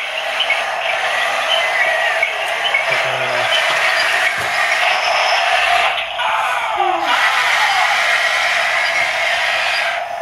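Radio-controlled toy tanks running, their built-in small speakers playing steady, thin engine-noise sound effects. About six seconds in, a falling, wavering effect sounds over the engine noise.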